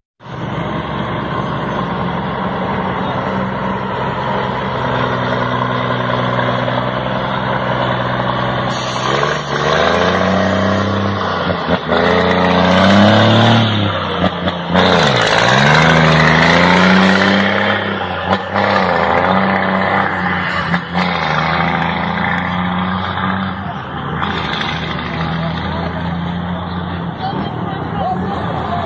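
Heavy truck diesel engine with a straight-through exhaust running at a steady idle. From about ten seconds in it is revved several times, its pitch rising and falling, then it settles back to a steady idle.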